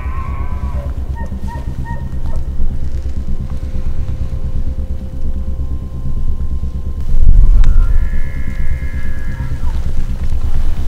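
Background music with a steady low pulse, swelling with a deep boom about seven seconds in. Over it, near the end, a bull elk bugles: a high, drawn-out whistle lasting under two seconds.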